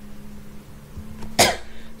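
A man's single short cough about a second and a half in, over a faint steady low hum.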